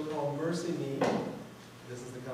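A man speaking in a room, with a short sharp knock about a second in.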